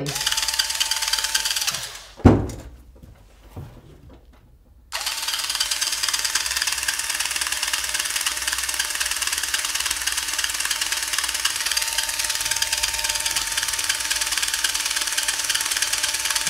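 Corded Makita electric drill running with a steady whine, which winds down about two seconds in. A single thump follows. About five seconds in the drill starts again suddenly and runs steadily on.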